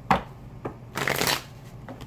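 Gilded Tarot cards being shuffled by hand, with a short burst of riffling card noise about a second in.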